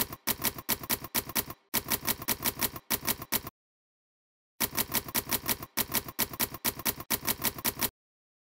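Manual typewriter keys striking in quick runs of about six clicks a second, with a pause of about a second near the middle, stopping just before the end.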